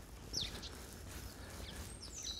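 A bird gives a short call falling in pitch about a third of a second in, then a fainter one, over a faint steady outdoor background.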